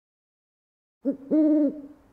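An owl hooting: a short hoot about a second in, then a longer steady hoot of about half a second.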